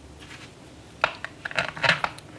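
A screwdriver is driving the fixing screws of a plastic wall switch plate. There is a quick run of small clicks and scrapes in the second half.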